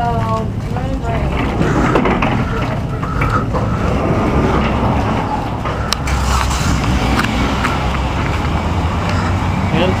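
A few indistinct words of speech at the start, then steady outdoor noise with a low rumble, typical of traffic by a parking lot, and a sharp click about six seconds in.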